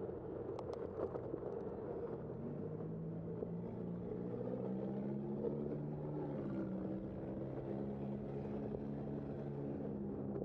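A motor vehicle's engine running nearby, a steady low hum that comes in a few seconds in and holds. Under it is the steady wind and road noise of a moving bicycle, with a few sharp clicks near the start.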